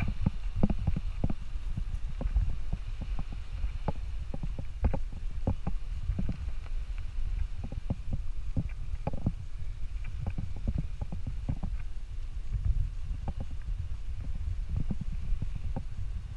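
Wind buffeting the camera microphone as a steady low rumble, with footsteps crunching on beach sand at an uneven walking pace of about two a second.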